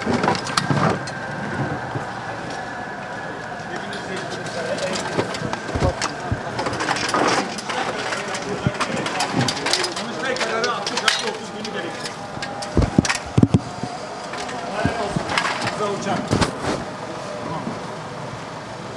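Several people talking over one another, with sharp metallic knocks and clanks from folding metal crowd-control barriers being handled. The loudest knocks come about 13 seconds in.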